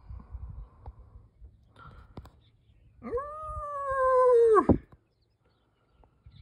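A single drawn-out animal call of just under two seconds, loud and clear. It swoops up in pitch, holds and slowly sags, then drops off suddenly. Before it come a low rumble and a couple of clicks.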